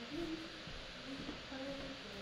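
A person's voice humming a few short, low, hoot-like notes over a steady background hiss.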